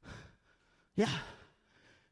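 A man's short, audible breath, then a single spoken 'yeah' with falling pitch about a second in.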